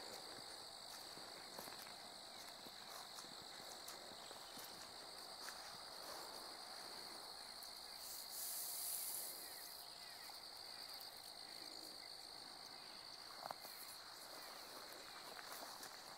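Steady high-pitched chirring of crickets, a summer insect chorus, heard faintly throughout. About halfway there is a brief rustle of grass stalks.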